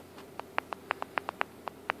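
A quick run of about ten small, sharp clicks at uneven spacing, starting a moment in: the camera's zoom control being pressed to zoom the shot back out.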